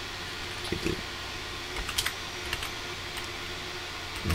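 A few scattered keystrokes on a computer keyboard, typing a word into a search box, over a steady low background hum.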